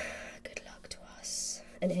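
Faint scratching of a graphite pencil moving lightly on paper, with a soft breath and a couple of small clicks in a quiet pause.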